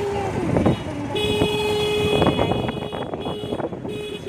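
A vehicle horn sounds one long steady blast starting about a second in, amid voices and street noise.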